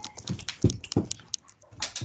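Computer keyboard typing: a quick, irregular run of clicks, with three heavier knocks about a third of a second apart in the first second.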